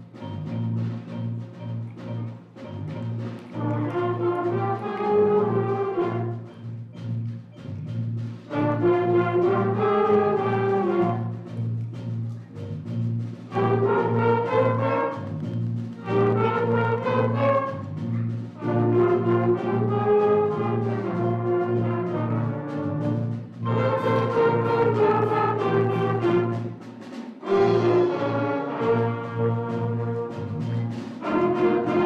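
School concert band playing a New Orleans-style jazz shuffle: a steady repeated low bass line under brass melody phrases that swell and fall every four to five seconds. The bass line drops out briefly near the end.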